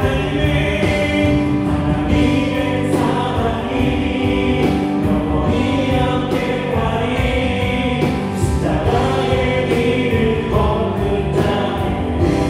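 Live worship band playing a gospel song: electric guitar, Korg Triton and Yamaha keyboards, bass guitar and a drum kit keeping a steady beat.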